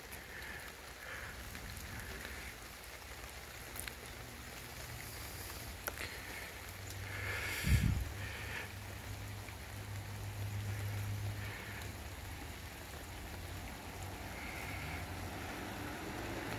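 Faint steady outdoor background noise with a low hum, broken by a couple of small handling clicks and a soft thump about eight seconds in.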